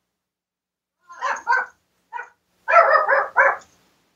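A dog barking in short barks about a second in: a pair, a single small one, then a quick run of three.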